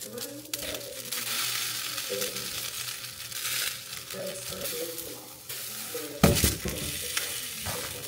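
Eggs frying in a nonstick frying pan, a steady sizzle. A sharp knock about six seconds in is the loudest sound, with a softer one near the end.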